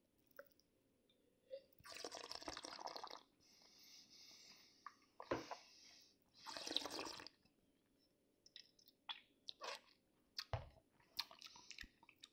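Faint wet sounds of wine being tasted: a slurp of about a second as a sip is drawn in with air, a softer swish, then another short wet burst. A few faint clicks and taps follow near the end.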